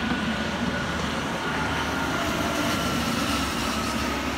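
Intercity coach driving past on the highway below, a steady rush of tyre and engine noise with a faint high whine that slowly drifts lower.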